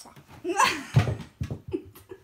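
A small child's giggling squeal, followed by a couple of thumps.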